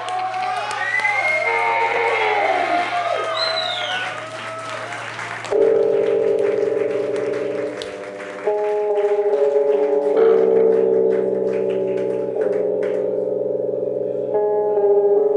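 Electric lap steel guitar played through an amplifier. For about five seconds it gives wavering slide tones that glide up and down over a steady low hum. Then it breaks suddenly into a louder sustained chord that shifts pitch three times.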